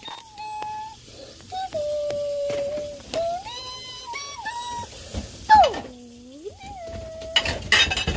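A young child humming or singing wordless, long held high notes that slide from one pitch to the next. Loud rustling and handling noise comes near the end.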